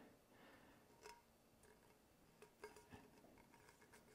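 Near silence, with a few faint short clicks and ticks from hands handling a paper-wrapped tumbler and heat tape, about a second in and again around two and a half to three seconds in.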